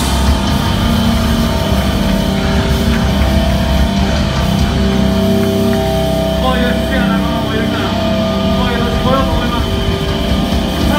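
Heavy rock band playing live at high volume: distorted guitars and bass held as a steady, sustained wall of sound. Voices come in over it in the second half.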